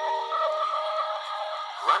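The closing held notes of a children's song played from a Teddy Ruxpin story cassette through the toy's small speaker, thin with no bass and slightly distorted tape playback. The music thins out near the end, and a narrating voice starts just as it ends.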